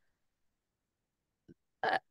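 A pause in speech, near silent, with a faint short click about one and a half seconds in, then a woman's hesitant 'uh' at the very end.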